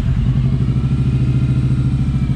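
Kawasaki Vaquero's 1,700 cc V-twin motorcycle engine idling steadily with an even, rapid pulse, just after being started.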